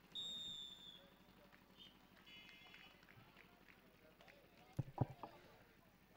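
A single short high whistle blast lasting about a second, then a faint cluster of high tones and a few dull knocks near the end.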